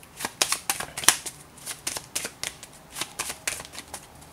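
A deck of tarot cards being shuffled by hand: a quick, irregular run of sharp card clicks and snaps.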